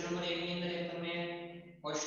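A man's voice holding one long, drawn-out syllable at a steady pitch, fading away near the end.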